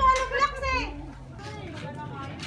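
Voices of people talking nearby, some of them high-pitched like children's, loudest in the first second and then fainter.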